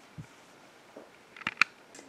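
Mostly quiet room tone with a soft low thump just after the start and two brief sharp clicks about one and a half seconds in.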